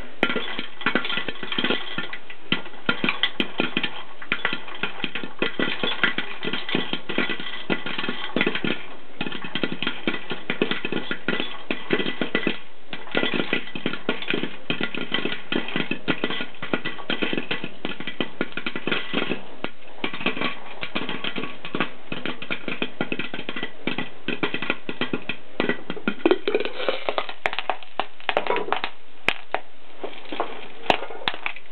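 Popcorn kernels popping fast and continuously inside a vintage AMC electric corn popper: dense pops with gentle pings off the aluminum pot under its glass dome lid.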